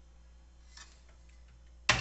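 Kitchen cabinet door being swung shut, with faint handling sounds and then one sharp knock near the end as it closes.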